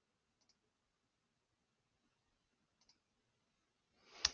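Near silence, with two very faint computer mouse clicks, one about half a second in and one near the end.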